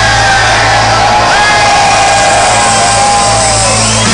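Live band music played loudly over a PA in a large hall, with a held bass note under it and a crowd shouting and cheering over the music.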